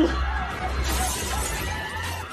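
Window glass shattering as it is struck with a skateboard, a crash of breaking glass about a second in, over a low, steady music bed.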